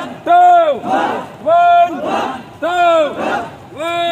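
A man shouting a drill count in long, drawn-out calls about once a second, each answered by a group of men shouting back in unison while they exercise.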